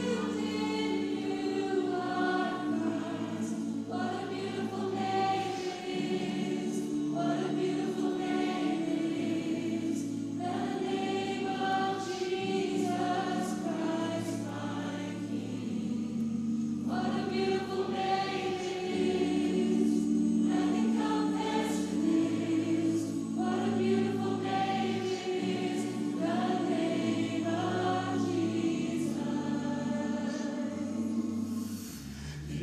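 A vocal ensemble singing a slow worship song in harmony, with a woman's voice leading and chords held for a few seconds at a time.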